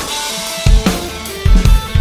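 Background music with a drum kit: a band track with heavy kick-drum and snare hits over sustained instrument tones.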